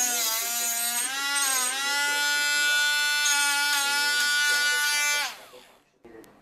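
Dremel rotary tool with a cutoff disc cutting a small metal piece held in a jig: a high, steady motor whine that dips in pitch several times under load, then stops about five seconds in, winding down quickly.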